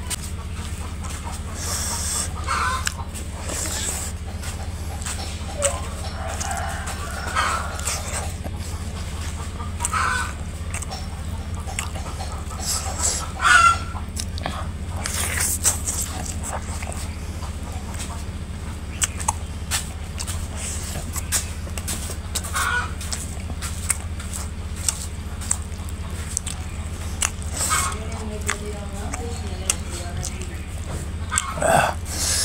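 Close-up eating sounds of a man eating chicken curry and rice by hand: chewing and mouth clicks over a steady low hum. Short animal calls sound in the background every few seconds.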